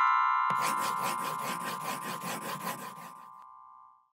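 Intro logo jingle: a bright chime chord rings on and slowly fades out, with a rapid scratchy rattle of about six strokes a second running over it from about half a second in until about three seconds in.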